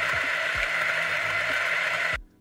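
A 64 mm flat-burr single-dose coffee grinder grinding beans: a steady whirring of the motor and burrs.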